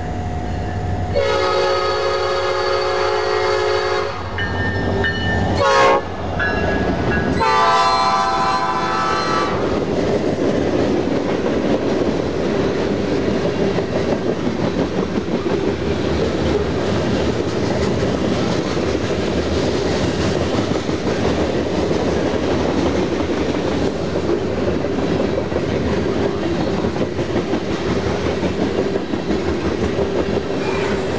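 Norfolk Southern SD70M-2 locomotive's Nathan P5 five-chime horn blowing two long blasts, with a short burst between them, as the train approaches and passes. This is followed by a freight train's hopper cars rolling by with a steady wheel-on-rail rumble and clickety-clack.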